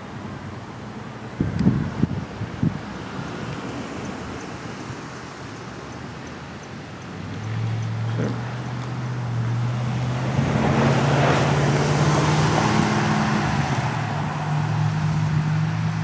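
A motor vehicle going by: a low engine hum comes in about halfway through and grows louder, with a swell of road noise loudest a few seconds later. A few low thumps sound near the start.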